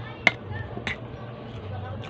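A metal spoon scooping rice from a bowl, clicking sharply against the bowl twice, once about a quarter second in and again near the middle, over a steady low hum.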